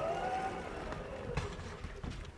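Vertical sliding chalkboard panels being pushed up and rolling in their tracks: a low rumble with a faint squeal that rises and then falls in pitch, and a light knock about a second and a half in.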